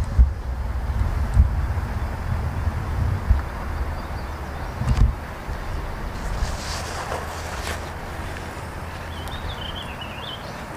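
Wind buffeting the microphone, a steady low rumble, with a few faint clicks and one sharper snap about halfway through.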